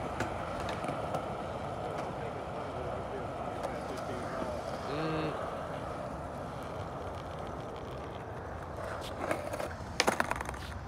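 Skateboard wheels rolling steadily over concrete, a continuous gritty rumble. Near the end a few sharp clacks as the rider steps off and the board tips up.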